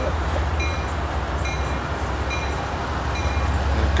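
CSX ES40DC and CW44AC diesel locomotives working under power as they pull an intermodal freight train away from a slow start: a steady low engine rumble.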